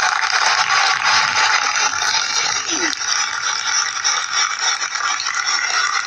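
Audience applauding. It starts abruptly, holds steady and begins to die away near the end.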